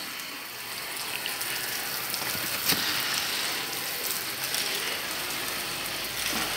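Steady background hiss, with one sharp click about two and a half seconds in.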